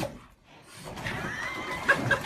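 A cat splashing through bath water, then a drawn-out meow with a gliding pitch from about a second in.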